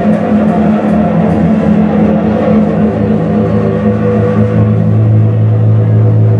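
Live band's amplified electric guitar holding a loud, sustained droning chord, with a few cymbal hits in the first couple of seconds; a low note swells and holds from about halfway through.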